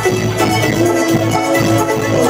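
Live band music, an instrumental passage with no vocals: a steady drum beat under a bass line, with a long held note coming in about half a second in.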